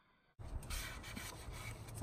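Silence for the first half second, then faint rubbing and rustling with small scattered clicks: a cloth rag wiping spilled Seafoam off the plastic engine cover.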